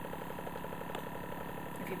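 Small airbrush makeup compressor (Luminess) running on its light setting: a steady hum with a fast, even pulse.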